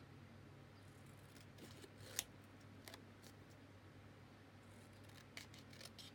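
A few faint snips of small scissors cutting a paper scrap, the clearest about two seconds in, over a low steady hum.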